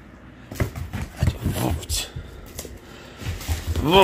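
A person's voice in short, unclear bits, with scattered light knocks and taps. A louder pitched call rises and falls right at the end.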